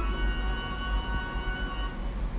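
Background organ music, slow held chords with a chord change at the start, over a steady low hum.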